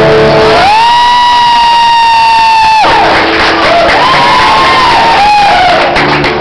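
A live song with acoustic guitar ends: the guitar stops and a high voice holds one long note for about two seconds. Whoops and cheering from the audience follow.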